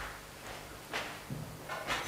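A few short rustles and scuffs of someone moving about and handling clothing off to the side, one about a second in and another near the end.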